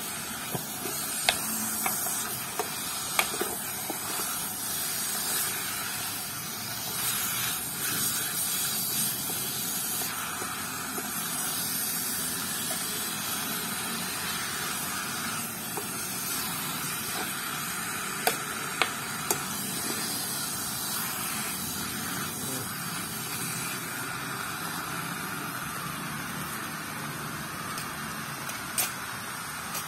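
Beef pieces with chilli paste sizzling in a pot, a steady hiss, while a ceramic spoon stirs them, with a few sharp clicks of the spoon against the pot.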